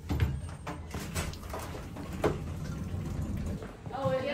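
Elevator car running with a low steady rumble and a few clicks and knocks as its doors slide open; the rumble stops shortly before the end.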